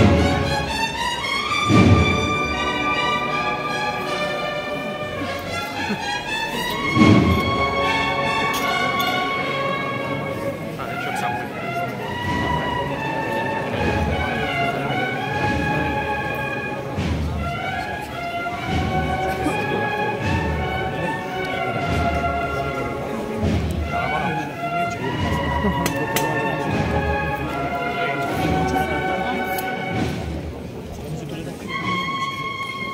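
Cornet-and-drum procession band playing a slow processional march: a sustained, moving brass melody over drums, with heavy drum strikes about two and seven seconds in.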